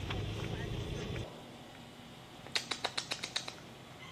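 Low rumble inside a moving car's cabin, cut off abruptly about a second in. Then, after a quieter stretch, a quick run of about eight sharp clicks lasting about a second.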